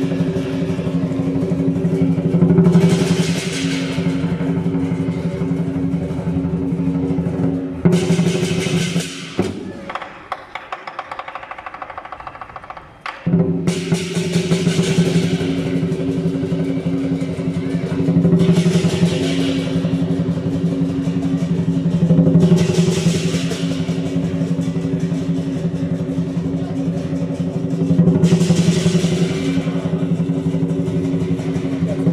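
Lion dance percussion band playing a fast drum roll with clashing hand cymbals, the cymbals swelling into loud crashes every few seconds. About nine seconds in the band falls away to a lull, then comes back in sharply about four seconds later.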